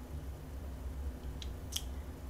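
Steady low background hum with two faint clicks close together about a second and a half in, typical of a thermal imaging camera's shutter closing and opening as it calibrates.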